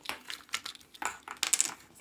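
Small plastic lip balm compact being handled, its lid giving several small, separate clicks and taps.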